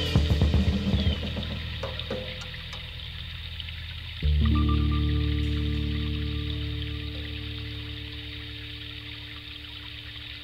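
Recorded 1969 folk-rock band music with drums, fading over the first few seconds. About four seconds in, one last sustained chord is struck and rings out, slowly dying away, as a song ends.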